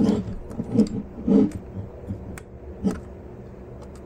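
Handling of a 1:24 scale diecast stock car on a desk: a few sharp clicks and light knocks as the model is tipped, turned and lifted.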